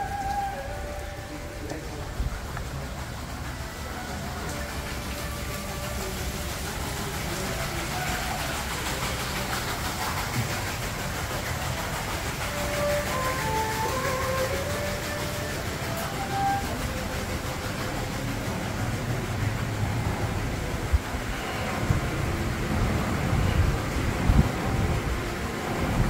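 Steady rushing ambient noise with faint scattered tones, like distant voices or music, and a few low bumps in the last few seconds.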